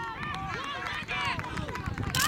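Several high women's voices shouting and calling out over one another on an open football pitch, in celebration just after a goal.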